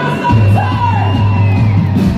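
Live rock band playing, a vocalist yelling a long held note over a sustained low chord that comes in about a quarter second in.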